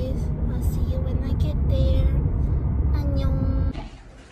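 Low rumble of a car heard from inside the cabin, with a woman's voice over it; it cuts off abruptly near the end.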